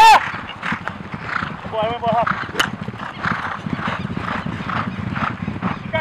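Polo ponies' hoofbeats on the grass field, with loud shouted calls, the loudest at the very start and a wavering one about two seconds in. There is a single sharp crack about two and a half seconds in.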